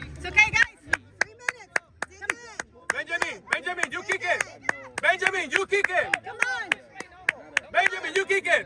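Rapid rhythmic clapping, about three to four sharp claps a second, with several raised voices shouting along.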